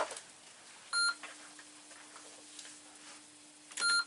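A TI-99/4A home computer gives two short electronic beeps as it resets and returns to its title screen, one about a second in and one near the end. A faint steady low hum starts with the first beep.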